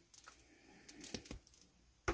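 A few faint clicks and light handling sounds of a cured epoxy resin casting being freed from its flexible silicone mold.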